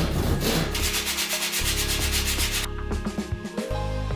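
Plywood being worked by hand with fast, even back-and-forth strokes, about seven a second, a dry scraping that stops about two and a half seconds in. Background music plays under it.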